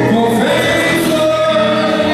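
Live band playing with singing: held vocal notes over electric guitar, keyboards, bass guitar and drum kit, amplified through a PA.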